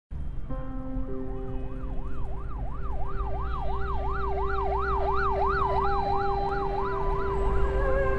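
An emergency vehicle siren in a fast yelp, its pitch sweeping up and down about three times a second. It comes in about a second in, is strongest in the middle and fades near the end, over a steady low traffic rumble.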